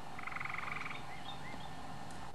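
A short, rapid animal trill lasting just under a second, with faint high chirps before and after it.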